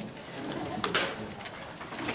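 Sheets of paper rustling and sliding on a desk as a handheld microphone is set down, with the loudest rustle or knock about a second in.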